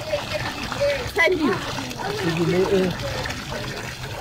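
Water pouring from a pipe spout into a swimming pool, splashing steadily, with people's voices talking over it.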